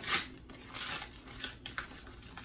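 A paper envelope being torn open along one edge in a few short rips, the loudest right at the start and another about a second in.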